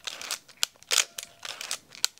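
Shutter of a manual 35mm film SLR clicking several times in quick succession, each a short sharp mechanical snap.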